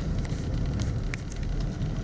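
Steady rumble of a vehicle driving on a road, engine and road noise heard from inside the moving vehicle, with a few faint clicks.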